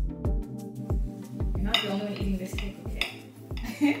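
Metal knife clinking and scraping against a ceramic plate as a cake is cut, starting a little under two seconds in, over background music with a steady beat.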